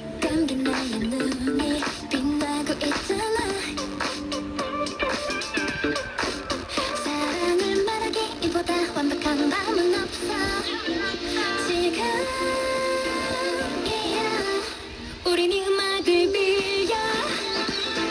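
A song with singing and instrumental backing, played by a small portable FM radio tuned to a music station; the sound is thin, with little bass. The music dips briefly about fifteen seconds in.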